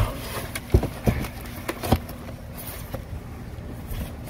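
A heavy black stone tea tray handled and turned over on foam packaging: four dull knocks, the loudest about three quarters of a second in, over a low steady rumble.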